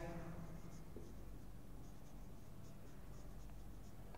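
Marker pen writing on a whiteboard: faint, irregular short scratchy strokes as the letters are written.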